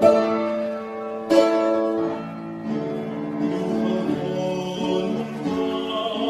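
A boy singing a Western-style song with upright piano accompaniment. Two piano chords are struck near the start, and the voice comes in about halfway through over the piano.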